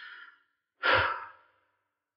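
A man sighs once, an audible breathy exhalation about a second in that fades out within half a second.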